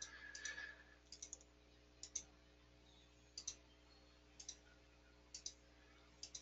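Computer mouse clicking as a list is scrolled down, each click a quick press-and-release pair, about one a second, faint against near-silent room tone.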